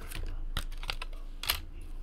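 Light, irregular clicks and taps from hands working at a desk, the sharpest about one and a half seconds in.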